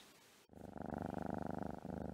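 Domestic cat purring: a steady, fast pulsing that starts about half a second in, with a brief break near the end.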